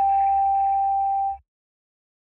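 The closing note of an experimental electronic track: a single steady mid-pitched tone over a deep bass drone, cut off suddenly about a second and a half in.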